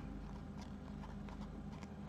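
Quiet handling of a paper cut-out and a white card, with a few faint taps and rustles.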